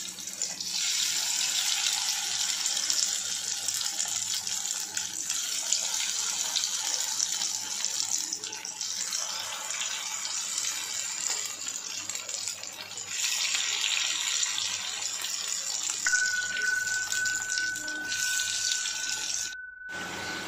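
Batter-coated baby potatoes deep-frying in hot oil in a kadai: a steady sizzle that eases for a few seconds midway and then picks up again.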